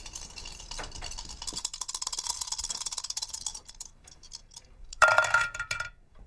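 Dice rattling fast in a shaker cup or bowl, a dense clatter that grows louder and then thins out to a few last clicks as the dice settle, during a gambling round. About five seconds in comes a sudden, loud, pitched sound that lasts about a second.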